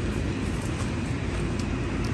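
Steady low rumbling outdoor background noise with no distinct events.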